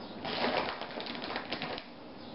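Plastic shredded-cheese bag crinkling as a hand reaches into it for more mozzarella: a burst of crackles lasting about a second and a half.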